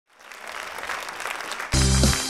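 Audience applauding, growing louder, then music starts abruptly near the end with strong bass notes.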